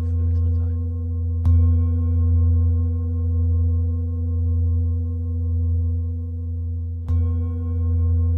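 Large Tibetan singing bowl resting on a person's back, struck with a padded mallet about a second and a half in and again near the end. After each strike it rings with a deep hum and a stack of higher overtones that slowly waver in loudness.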